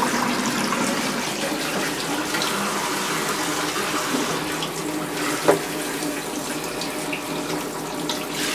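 Handheld shower wand spraying water steadily into a bathtub, rinsing a wet cat. A single short knock about five and a half seconds in.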